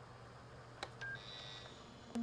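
Faint low hum with a single click, then a short beep and a higher steady beep lasting about half a second.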